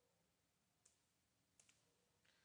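Near silence, with three very faint clicks from keys being typed on a computer keyboard, one a little under a second in and two close together near the end.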